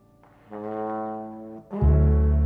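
Slow jazz: a trombone holds a sustained note over the fading tail of a piano chord. Near the end a much louder, lower note comes in and carries on.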